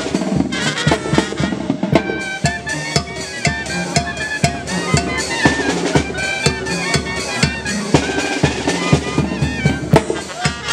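Brass band music with bass drum and snare drum keeping a steady, quick beat under the horns.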